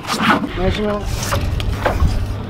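A few short spoken words over a steady low drone from the fishing boat's engine, with a couple of light clicks.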